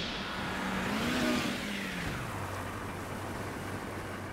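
A sound-design effect for an animated logo reveal: a low rumble, with a pitched tone that rises and then falls within the first two seconds and settles into a steady low hum.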